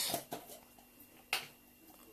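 Handling of jars on a tabletop: a few faint ticks, then one short, sharp click about a second in, as of a plastic jar lid set down, against quiet room tone.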